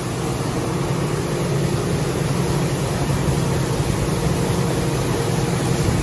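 A seed treater running steadily, with its motors, conveyor and tumbling drum giving a constant low mechanical drone as wheat seed is treated and tumbled.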